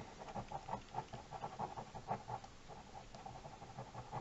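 Gel ink pen scratching on paper in a fast run of short strokes, several a second, as lines are thickened and hatched in.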